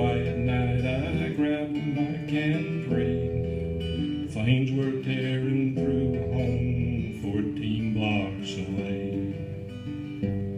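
Acoustic guitar playing steady chord accompaniment between sung lines of a song.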